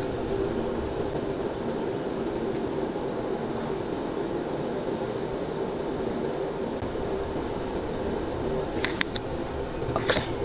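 A steady low mechanical hum with a faint tone in it, unchanging throughout; a couple of light clicks near the end.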